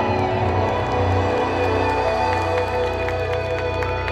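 Live pop music over a large outdoor PA: held chords over a steady bass, with no singing.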